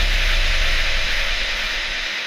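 Tail of an electronic intro sting: a loud hissing noise sweep over a deep bass tone that slides downward, both slowly fading out.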